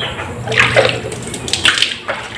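Water splashing and pouring in two bursts, the first about half a second in and the second near the end.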